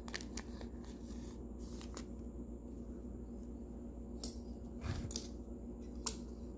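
Light plastic rustles and clicks as a trading card is slid into a clear soft card sleeve and handled, with a soft knock about five seconds in.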